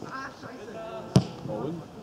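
A football kicked once, a single sharp thud about a second in, with players' shouts around it.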